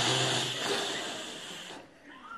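A long, breathy rush of air with no clear whistle note, fading away over about two seconds: a person blowing hard through a mouth stuffed full of food, trying and failing to whistle.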